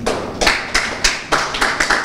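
A small audience clapping, with the hand claps coming separately and unevenly.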